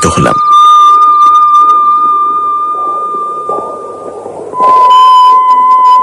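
A long, steady, high whistle-like tone from the radio drama's sound design that slowly fades. Just before the end a second, slightly lower tone starts loud.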